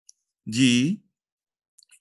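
A voice calling out the letter "G" once, the cue to breathe out and bring the arms down in a bhastrika breathing count. Otherwise silent, apart from two faint clicks.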